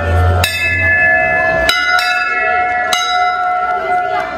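Hanging brass temple bells struck three times, about a second and a quarter apart. Each strike rings on with several overlapping tones that carry into the next.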